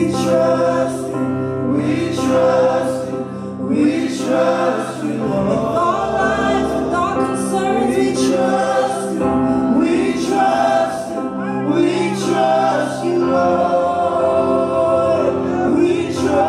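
Gospel worship music: several voices singing together over sustained keyboard chords.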